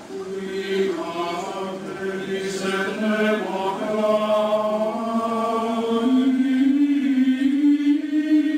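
Liturgical chant sung by a choir in slow, long-held notes, several voices at once, growing louder, with the melody climbing in pitch over the last couple of seconds.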